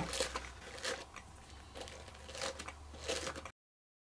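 Dog brush raked through the cut ends of twine cord, fraying out a macrame tassel: several short, faint scratchy strokes, spaced irregularly under a second apart. The sound cuts off suddenly to dead silence about three and a half seconds in.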